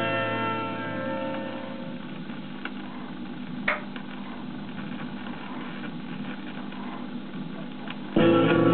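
A vinyl record playing on a record player. A track's final guitar chord rings and dies away over the first couple of seconds, then the stylus runs through the quiet gap between tracks, with a low hum, faint surface noise and a sharp click a little under four seconds in.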